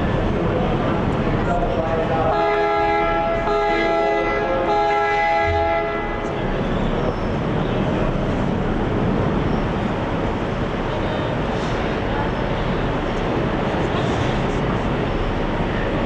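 Steady running noise of the ferry as it comes in to the wharf. About two seconds in, a multi-tone horn sounds for roughly three and a half seconds, with two very brief breaks, then stops.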